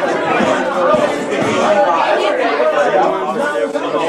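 Many students talking at once in a classroom: a steady, overlapping chatter of voices with no single speaker standing out.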